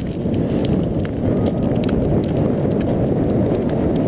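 Blokart rolling fast over hard beach sand: a steady low rumble of wind on the microphone and wheels on the sand, with scattered light clicks and rattles from the kart.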